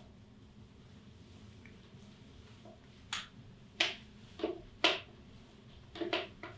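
A chiropractor's hands pressing on a patient's bare lower back during palpation: a quiet stretch, then four short, sharp clicks in under two seconds from skin and hand contact.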